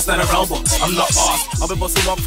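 Bassline house DJ mix playing loud: a steady, fast kick drum and heavy bass under a rapped vocal.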